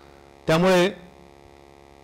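Steady electrical mains hum on an amplified microphone, broken by one short word from a man about half a second in.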